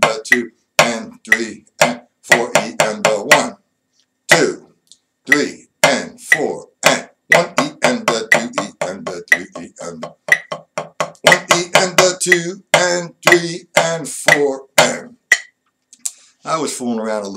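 Drumsticks playing a written 4/4 reading rhythm, with steady strokes about three to four a second and a short break about four seconds in. A man counts the subdivisions aloud in time ("one e and the two").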